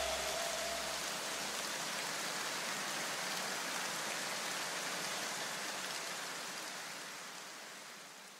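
A steady hiss of noise, like rain, left after the beat of the electronic background music stops. It is the tail of the track, with a few low notes dying away in the first two seconds, and it fades slowly toward the end.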